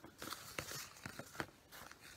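Faint rustling and a few light clicks of hands handling folded paper origami hearts and a piece of string, the clearest click about one and a half seconds in.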